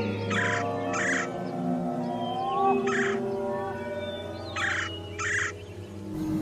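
A bird calling harshly five times, in short separate calls (two near the start, one in the middle, two close together near the end), over eerie background music with a steady low drone.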